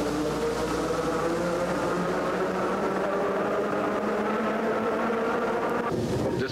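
Electric interurban railcar running through a tunnel: a steady rumbling noise with a few constant tones that holds unchanged throughout.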